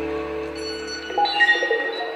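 Live band's final chord fading out on electric guitar and keyboards as the song ends. About a second in, a few high, ringing keyboard-like notes come in over the decaying chord.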